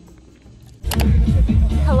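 Faint background music, then about a second in a sudden loud low rumble of wind buffeting the microphone, with a girl's voice saying "hello" near the end.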